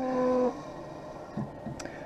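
Optical lens edger starting its cycle as its door closes and the chuck clamps the lens: a steady low motor hum that cuts off about half a second in. It is followed by faint machine noise with a light click near the end.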